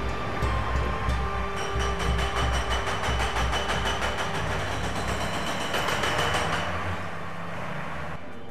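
Documentary score with a low pulsing beat about twice a second and held tones, mixed with heavy mine machinery noise. In the middle comes a rapid, even clatter of a pneumatic rock drill breaking rock.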